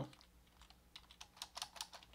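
Faint, rapid keystrokes on a computer keyboard, starting about half a second in, as code is typed.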